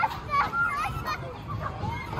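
Children's voices calling and chattering at a busy playground, with other people talking around them.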